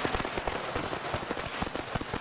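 Rapid automatic-rifle gunfire, a sustained burst of fast, irregular cracks.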